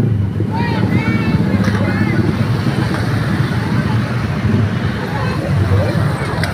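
Motorcycles and scooters passing slowly in jammed traffic, their engines running steadily, with people's voices calling out over them during the first couple of seconds.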